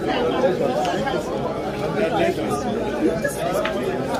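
Several people talking at once, their voices overlapping in chatter with no single clear speaker.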